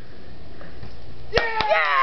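Two sharp knocks about a quarter second apart near the end, followed at once by a short exclamation from a person's voice.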